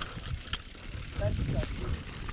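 Mountain bike (Specialized Enduro Evo) rolling down a dirt trail: tyre rumble on the ground with scattered rattles and knocks from the bike.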